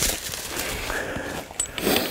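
Footsteps and trekking poles moving through dry fallen leaves on a woodland trail, giving a steady rustling with a few small clicks.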